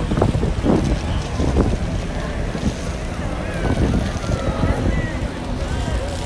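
Outdoor wind buffeting the microphone with a constant low rumble, under indistinct voices of passers-by that come and go.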